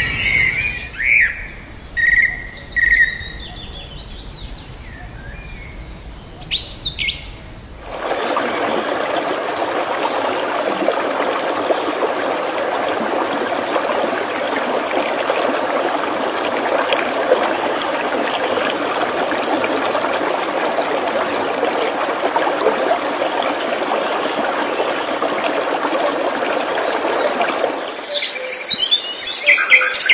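Birds chirping over wind buffeting the microphone in an open safari jeep. About eight seconds in this cuts to a steady, even rushing noise that runs for about twenty seconds, and bird chirps return near the end.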